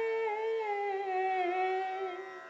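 A singer holding one long sung note that wavers and slides down in pitch partway through, the held end of a word in a devotional song.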